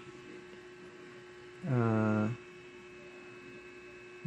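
Steady electrical hum with faint hiss under a pause in speech; a man's hesitant "ah, uh" about halfway through.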